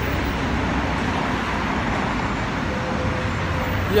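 Steady road traffic noise from cars and minibuses on a busy multi-lane city street, a continuous even rumble with no single vehicle standing out.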